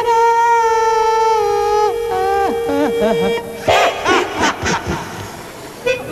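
A man's wordless improvised vocalising at the mic over a held note: about two seconds in the pitch starts to slide, then comes a burst of quick rising-and-falling whoops that trails off near the end.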